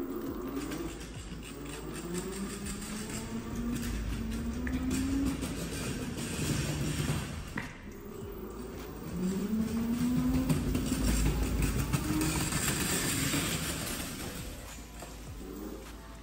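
Electric motor of a children's electric drift trike whining as it rides, the pitch rising as it speeds up and levelling off, in two runs with a dip about halfway through, over the hiss of its small wheels rolling on a tiled floor.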